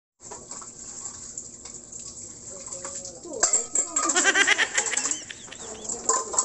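Tap water running into a sink as dishes are washed. About three and a half seconds in, a louder run of quick calls that bend up and down joins in, with some clinks.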